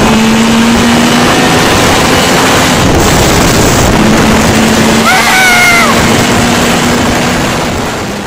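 A vehicle running amid heavy wind rush on the microphone, with a steady low drone; a short whine rises and falls about five seconds in, and the sound fades out at the end.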